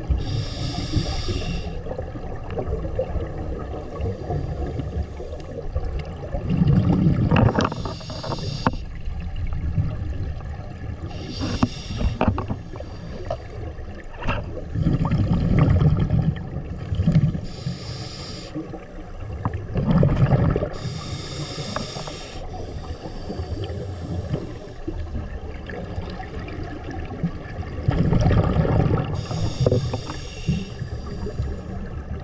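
Scuba regulator breathing heard underwater: a hissing inhale through the regulator every several seconds, with bubbling bursts of exhaled air between them.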